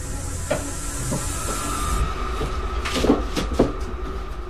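Light knocks and clatter of objects being moved about inside a wooden cabinet, several in quick succession near the end, over a low steady rumble and hiss. A thin steady high tone comes in about halfway.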